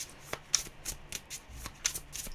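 A deck of tarot cards being shuffled by hand: about ten crisp, irregularly spaced flicks and snaps of the card edges.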